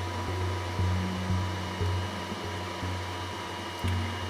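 Steady low hum with a faint, steady high whine over it, like fans and electrical equipment running in a small aircraft cockpit with the avionics powered.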